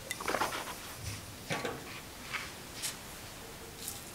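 Wine being sipped from a glass and slurped, air drawn through the mouthful, with a second shorter slurp about a second later and a few soft clicks after.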